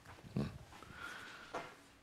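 Quiet pause: a man's short breath sound about a third of a second in, then a faint click at about one and a half seconds.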